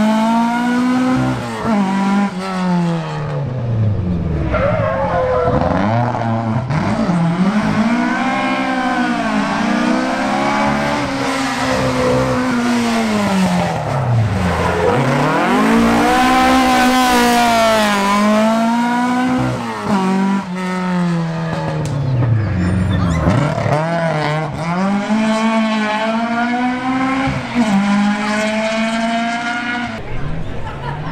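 A rally car's engine being driven hard, its pitch climbing and dropping again and again every couple of seconds as the driver accelerates, lifts and brakes between corners.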